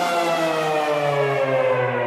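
Electronic dance music in a DJ mix: a sustained synth chord slowly falls in pitch, a siren-like downward sweep that builds toward the next section of the track.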